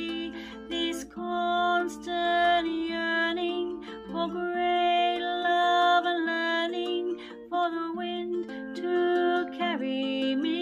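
Ukulele accompanying a woman singing a slow folk song, her voice rising and falling over the held chords.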